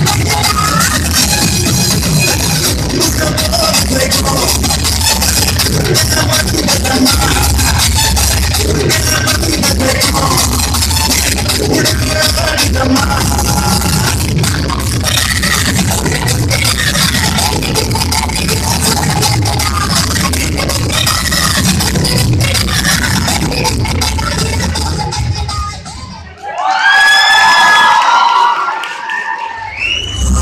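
Loud dance music with a heavy low beat over a hall's sound system, with an audience cheering. About four seconds before the end the music stops, and a loud burst of audience shouting and cheering follows.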